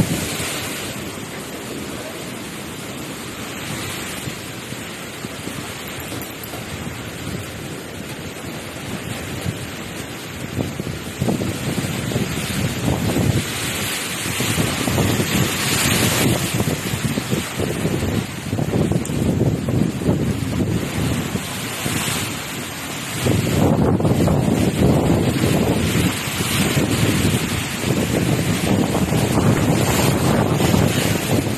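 Typhoon-force wind blowing in strong gusts, with wind buffeting the microphone; it swells about a third of the way in and grows louder again near the end.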